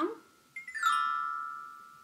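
Small metal-barred xylophone struck with a mallet in a quick run of notes going down, starting about half a second in, the notes ringing on and slowly fading.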